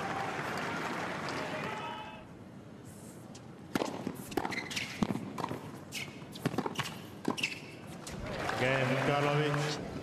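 Tennis point on a hard court: a run of sharp racket-on-ball strikes from about four seconds in, with short high squeaks of shoes on the court. The crowd cheers and applauds at the start and again from about eight seconds in, when the point ends.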